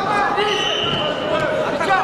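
Indistinct shouting voices in a large sports hall, with a few short thuds near the end.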